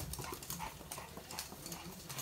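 Toy poodle's claws clicking on a hard wood-effect floor as it runs, a quick, uneven patter of ticks.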